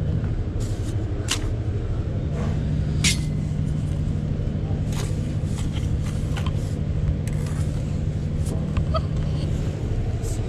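A steady low machine drone, with a few sharp taps as soldier bricks are knocked down into line with a trowel.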